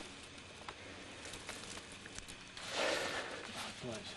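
Faint handling noise with a few light clicks, then a short rustle of dry brush and leaves about three seconds in.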